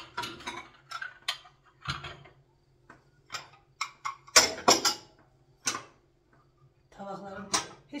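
Dinner plates being stacked on a kitchen cabinet shelf: a series of irregular sharp clinks and knocks of plate on plate and on the shelf, loudest about halfway through.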